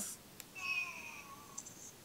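Faint, thin playback of the just-recorded sound clip from the instax mini Liplay's small built-in speaker: a short voice-like sound that glides down in pitch, with another brief bit near the end.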